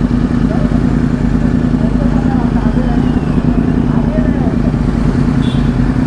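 Sport-bike engines running at a steady, low, unchanging pitch as a small group of motorcycles rolls slowly along together, with no revving.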